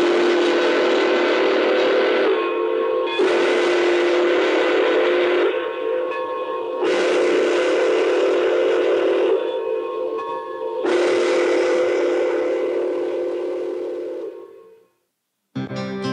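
Steam whistle of Pere Marquette 2-8-4 Berkshire No. 1225 blowing four long blasts, each a chord of several tones, with short breaks between; the last blast fades out. Heard from an old film's soundtrack played over a room's loudspeakers.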